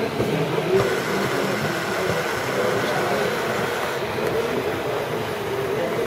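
LEGO electric motors and gear mechanisms running steadily, a continuous mechanical whir and rattle.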